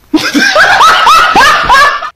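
A man laughing loudly in a quick string of short rising laughs, about four a second.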